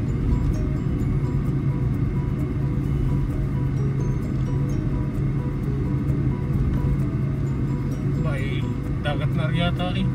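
Steady low rumble of a car driving on a paved road, heard from inside the cabin. A voice comes in briefly near the end.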